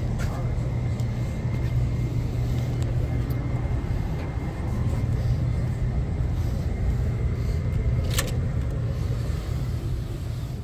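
Steady low rumble with a faint high whine held underneath, and a door latch clicking about eight seconds in.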